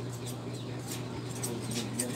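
Barber's scissors snipping hair, a quick irregular series of crisp clicks.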